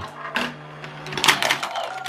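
Techno Gears Marble Mania Vortex 2.0 plastic marble run in motion: several glass marbles click and clatter irregularly along the plastic tracks and spinners over the steady hum of the motorised vortex launcher.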